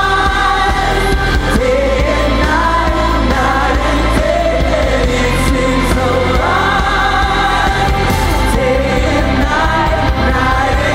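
Live worship music: a band with a steady bass line under singers holding long, sliding sung notes.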